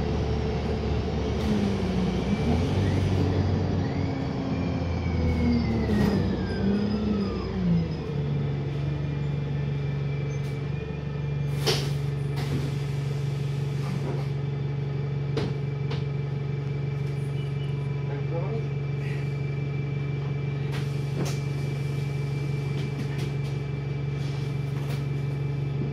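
Interior of a Wright StreetLite single-deck bus: diesel engine and drivetrain, with a whine that falls in pitch as the bus slows over the first several seconds. It then settles into a steady low drone, with occasional sharp clicks and rattles from the bodywork.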